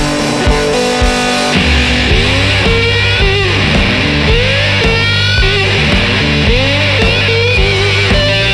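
Slide guitar on a resonator-bodied electric, driven through a Russian-style Big Muff fuzz (JHS Crimson) with slapback delay: a blues phrase of slide notes gliding up and down over low sustained notes, the glides starting about two seconds in.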